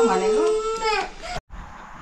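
A young child crying in long, wavering, high-pitched wails, cut off abruptly about a second and a half in, leaving only faint room sound.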